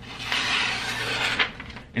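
A steel knife blade slicing through a sheet of printer paper in a sharpness test: a dry, papery rasp lasting about a second and a quarter, ending in a few small ticks. The blade cuts cleanly enough to count as still fairly sharp.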